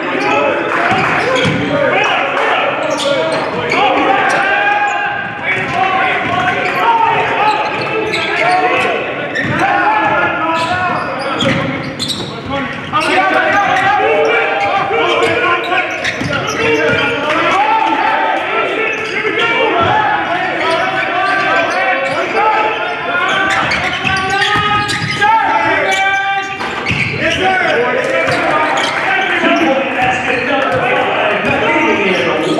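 A basketball bouncing on a hardwood court during live play, with the voices of players and spectators echoing in a large gym.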